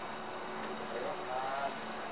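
Room ambience: a steady low hum with faint, distant voices briefly heard about halfway through.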